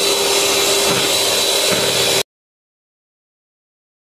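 Electric hand mixer running steadily, its beaters whisking egg batter in a bowl, with a steady motor whine. The sound cuts off abruptly a little over two seconds in, and total silence follows.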